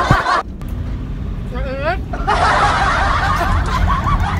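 Steady low rumble of a van's cabin on the road, under laughter and talk. The voices drop out for about two seconds early on, leaving the rumble and one short rising vocal squeal, then the talk and laughter return.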